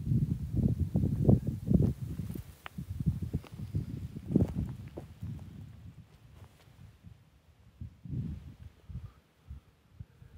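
Footsteps crunching over loose rock and dry grass on a stony lakeshore: a quick run of irregular low thuds for the first five seconds or so, then only a few scattered steps.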